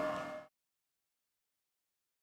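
The tail of a steady electric hum of several held tones from a Toyota Innova Zenix hybrid moving on its electric motor with the petrol engine off, cut off abruptly about half a second in, then silence.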